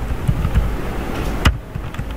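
Low rumble and soft thumps picked up by a close desk microphone, with one sharp click about one and a half seconds in.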